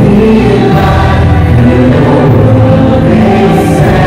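A small vocal group of women and a man singing together into handheld microphones, amplified through a hall's sound system.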